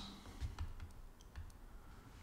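A few faint, separate computer mouse clicks.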